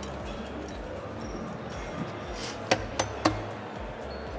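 Three sharp clinks of spoons and small coffee cups, close together near the end, over steady hall noise.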